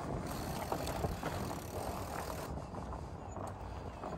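Surly Ice Cream Truck fat bike rolling along a sandy dirt trail: a steady rumble of the wide tyres on the ground, with a few faint ticks and wind on the microphone.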